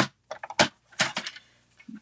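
Cardstock sheet and paper trimmer being handled: a few sharp clacks and taps in the first second or so as the sheet is laid on the trimmer and moved against its rail, then fainter ticks.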